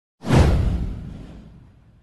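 A whoosh sound effect for a motion-graphics intro. It starts suddenly about a fifth of a second in, with a deep low end under the rush, and fades away over about a second and a half.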